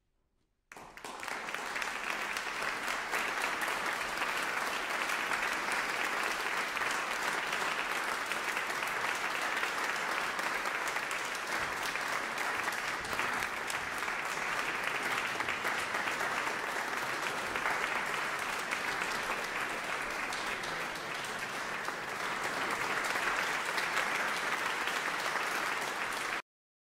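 Audience applauding in a concert hall: the clapping starts suddenly about a second in, holds steady, and swells slightly near the end.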